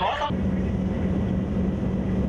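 Warship under way: the steady low hum of its engines, an unchanging drone with a rumble beneath it.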